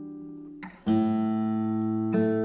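Bentivoglio 7603a VT acoustic guitar, with an Adirondack spruce top and Indian rosewood back and sides, played fingerstyle. A held chord fades away, then a new chord is plucked a little under a second in and rings on.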